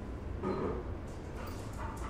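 A small dog whimpering and yipping in two short bursts, with light clicks from its claws on a tiled floor as it starts to run.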